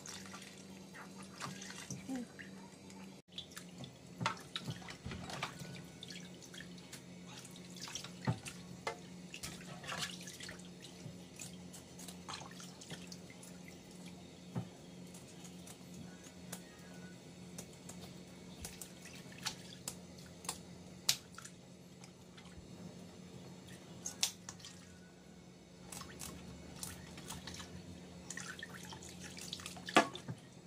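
Kitchen tap running and splashing into a stainless steel sink while a whole fish is handled, rinsed and cleaned, with scattered sharp clicks and knocks of the fish and tools against the sink. A steady low hum runs underneath.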